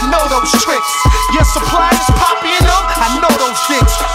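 Hip hop music: rapping over a beat of heavy, regularly spaced bass-drum hits and held synth notes.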